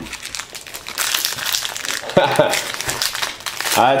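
Crinkling and rustling of a trading-card pack wrapper being handled and opened, an irregular run of small crackles.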